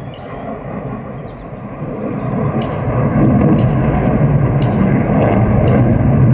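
Sukhoi Su-30MKI's twin AL-31FP turbofan jet engines heard from the ground as a deep, steady rumble that grows louder over the first three seconds and then holds. Faint bird chirps sound near the start, and sharp clicks come about once a second in the later half.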